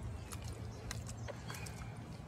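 Low steady rumble with scattered faint clicks and knocks, handling noise of a handheld phone.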